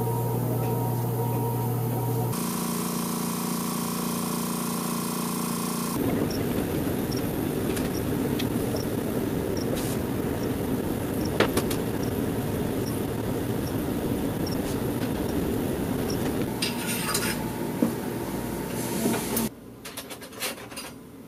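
Programat dental ceramic furnace running with a steady mechanical hum. The hum changes abruptly about two seconds in and again about six seconds in, becoming a rougher, even running noise.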